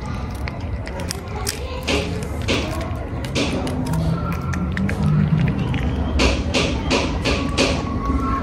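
A cat eating wet food from a foil tray close by: short wet smacking and chewing clicks at irregular spacing, with several coming in quick succession near the end.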